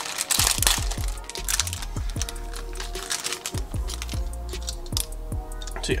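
Background music with a steady beat. A brief rustling noise sounds in the first second.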